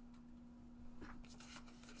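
Near silence with a steady low hum, and a few faint rustles of cardstock being handled about a second in.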